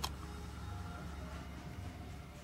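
Faint steady drone of a vacuum cleaner being run over a car, with a thin whine in it.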